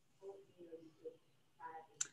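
Near silence with a few faint, murmured words from a voice.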